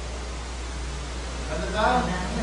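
Steady background hiss with a constant low hum, then a voice begins talking about a second and a half in.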